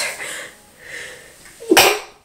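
A woman sneezing once near the end, a single short, loud burst.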